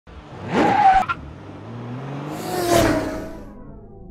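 Car sound effect for a logo intro: an engine revs up in a quick rising sweep and cuts off with a sharp click about a second in. A second swell follows, its pitch falling slightly like a car passing by, and fades out.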